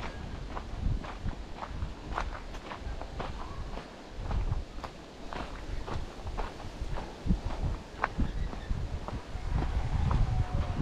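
Footsteps on a dirt and gravel track at a steady walking pace, about two to three steps a second.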